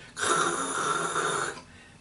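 A man's voice imitating a rush of air: one breathy hiss lasting about a second and a half. It stands for the sound of compressed air leaking past a closed valve that is not sealing, heard through a hose during a cylinder leak-down test.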